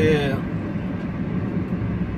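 Steady engine and road noise inside the cab of a moving Fiat Fiorino van, with an even low hum.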